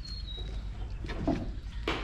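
A bird's thin whistle, slowly falling in pitch, fading out in the first half-second over a steady low hum, with a sharp knock near the end.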